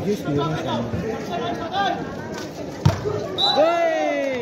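Crowd of spectators chattering and calling out at a volleyball match. A sharp smack of the volleyball being struck comes about three seconds in, followed by a long shout that falls in pitch.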